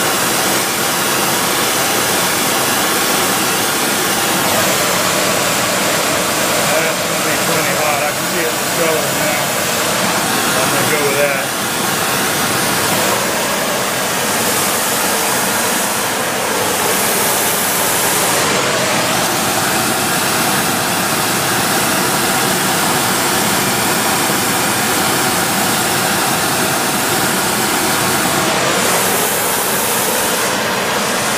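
Steady, loud rushing hiss of a flame-spray metalizing gun's gas and air jet spraying metal onto a lathe-turned motor shaft.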